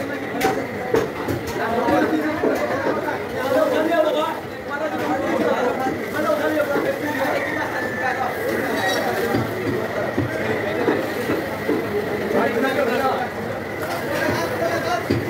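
Indistinct chatter: several people talking over one another without pause.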